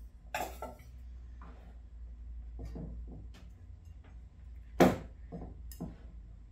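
A few sharp knocks and clinks of a glass mixing bowl being worked with a small potato masher as cold butter pieces go into flour, the loudest knock near the end.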